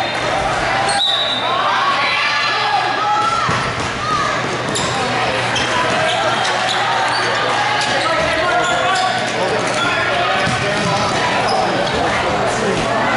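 Indoor futsal play echoing in a sports hall: the ball being kicked and thudding on the court, shoes squeaking on the hardwood floor in many short squeals, and players calling out. A sharp impact about a second in is the loudest single hit.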